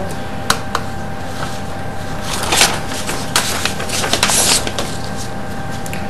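A small sheet of paper being handled and set on a weighing scale: a few light clicks and two brief rustles over a steady faint hum.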